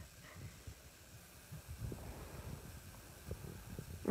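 Faint handling noise from a handheld phone being moved about over a bed: a low, irregular rumble and light rustling with a few soft clicks, under a faint hiss.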